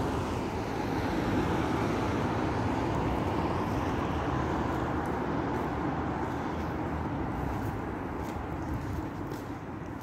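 Steady road traffic noise from passing cars, slowly fading toward the end, with a few faint clicks in the second half.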